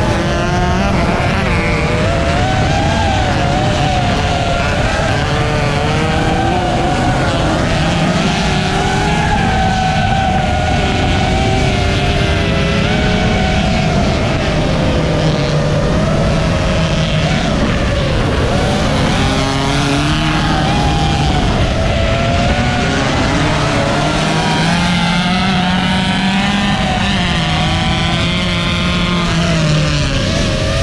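Loud, continuous motor noise in several pitches that waver up and down without a break, rising and falling with the throttle.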